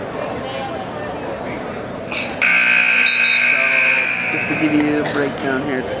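Gymnasium scoreboard buzzer sounding once for about a second and a half, signalling the end of the wrestling period, over crowd voices.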